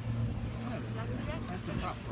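Several people talking at once in the background, with no clear words, over a steady low hum.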